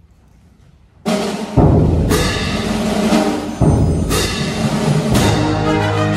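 A brass ensemble bursts into music about a second in, opening a fast piece with loud, accented full-band hits roughly every second or two over sustained brass chords.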